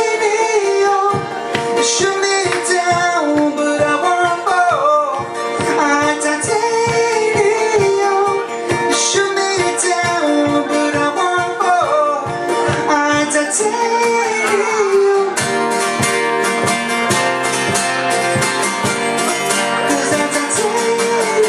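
Live acoustic band music: two acoustic guitars strummed in a steady rhythm under a male singing voice. About 15 seconds in, the strumming turns faster and fuller.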